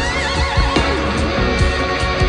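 Live rock music: an electric lead guitar plays notes with wide vibrato and a rising bend near the start, over bass and drums.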